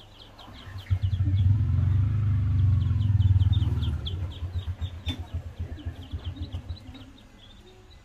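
A small engine running with a low, fast beat, loud from about a second in, then its beats slowing and fading away by about seven seconds. High, repeated chirping of birds or insects continues throughout.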